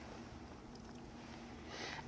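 A quiet pause: only a faint, steady background hiss with a low hum, and no distinct sound event.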